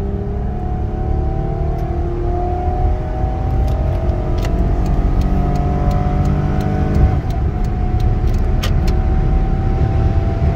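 A 1999 Toyota Camry LE's V6 engine under full throttle, heard from inside the cabin, rising steadily in pitch as it revs toward about 6,000 rpm. At about seven seconds in, the automatic transmission upshifts: the pitch drops suddenly and then starts climbing again.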